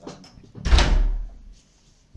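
A door being shut with a heavy thud a little over half a second in, its sound dying away over about half a second.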